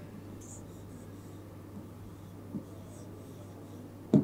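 Faint scratching of a stylus writing on an interactive whiteboard, in a few short strokes, over a low steady hum.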